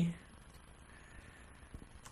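A spoken word trails off at the start, then faint room hiss with a couple of faint computer keyboard clicks near the end, as a field name is typed.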